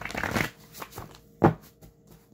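A stack of paper index cards shuffled by hand: a quick riffling rustle in the first half second, a few lighter flicks, then one sharp tap about a second and a half in, the loudest sound.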